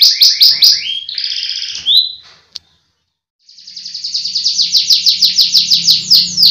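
Domestic canary singing: fast runs of repeated chirps and a buzzy rolled note, then a break of about a second of silence, then a long, very fast trill of quickly repeated falling notes that grows louder.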